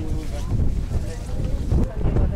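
Wind buffeting the microphone, a heavy, uneven low rumble, with faint voices of people nearby.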